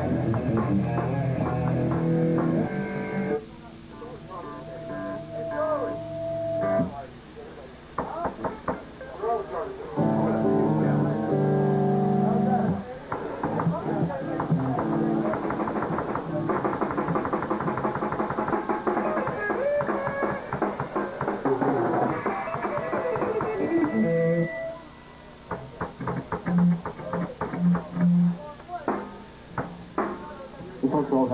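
Hardcore band playing live: distorted electric guitars, bass and drums. The full band drops out twice, about four seconds in and again near the end, to quieter stretches of single held guitar notes before crashing back in.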